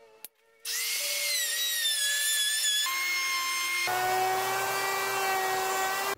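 Ryobi 8.5-amp corded fixed-base router running and cutting along the edge of a wooden board: a loud high motor whine that starts suddenly about half a second in after a short click. The whine shifts abruptly twice, the second time about four seconds in, when a low hum joins it.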